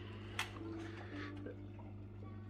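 Quiet background with a steady low hum and a single short click about half a second in.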